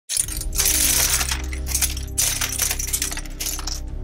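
Plastic LEGO bricks clattering as they rain down onto a pile, in dense rattling waves, over music with a steady low bass.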